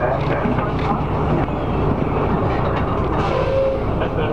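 Neoplan AN440 city bus engine running with a steady low drone, heard from inside the bus, with a brief whine about three seconds in.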